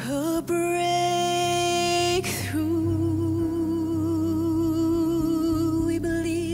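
A female vocalist sings two long held notes over a low, soft keyboard accompaniment: the first steady, the second with a wavering vibrato. A brief breathy break separates them about two seconds in.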